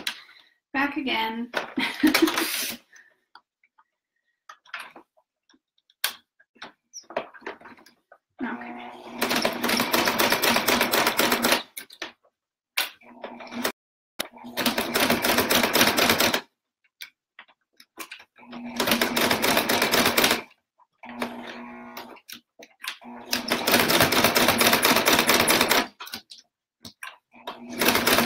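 Electric domestic sewing machine stitching through a thick quilted oven mitt in four runs of two to three seconds each, with short stops between where the fabric is turned, and a fifth run starting near the end. Each run is a steady motor hum with the needle's rapid ticking.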